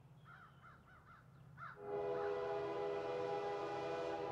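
Crows cawing, about five short calls in quick succession. About two seconds in, a much louder held chord of several steady tones starts and continues, like a horn blowing.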